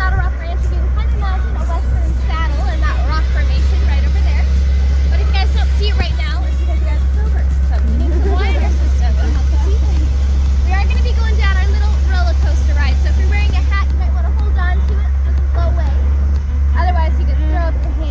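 Steady low rumble of an open-top vehicle driving on a dirt track, with wind on the microphone, under chattering voices and some music.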